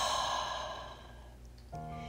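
A woman's long, slow exhale through the mouth, a deep breath released as a sigh that fades out over about a second and a half. Soft background music with sustained notes comes in near the end.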